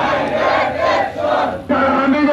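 Crowd of men chanting protest slogans in unison, in short shouted phrases.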